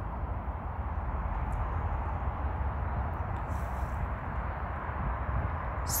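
Steady outdoor background noise with a deep, constant low rumble and no distinct events.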